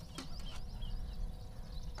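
Low outdoor rumble with a few faint, short bird chirps and a single click shortly after the start.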